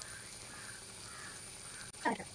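A bird calling faintly, a call about every half second, over quiet room sound.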